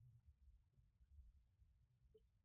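Near silence with a faint computer mouse click about a second in.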